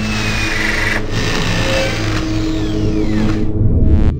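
Logo-intro sound effect: a steady engine-like drone with a falling whoosh in the second half.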